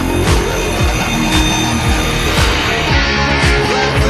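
Distorted electric guitar in Drop C tuning playing a heavy rock riff, over drums that hit roughly once a second.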